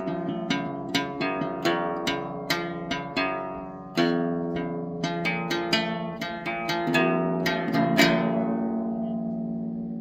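A classical guitar played solo, a run of separately plucked notes and chords at an easy pace. A last chord about eight seconds in is left to ring and fade away.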